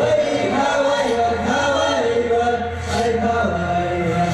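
Ecuadorian folk dance music with a group of voices chanting together over a steady low drone.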